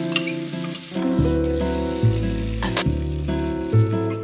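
Beaten egg poured into a hot frying pan of spinach, sizzling, strongest in the first second, over background music whose bass comes in about a second in.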